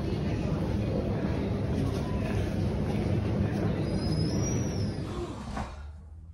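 Supermarket background noise: a steady low rumble of movement and handling with indistinct voices in the store, which drops away suddenly near the end.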